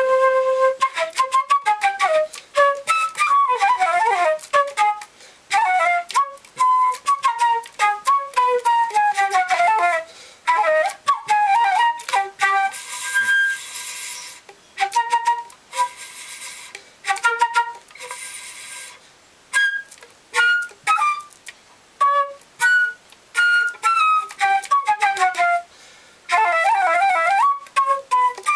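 Solo silver concert flute played freely, in quick runs of short notes and falling phrases. In the middle come two airy, breathy passages where the tone is mostly breath noise.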